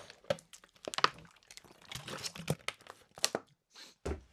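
A run of sharp crinkling clicks and crackles from a drink container being handled and drunk from.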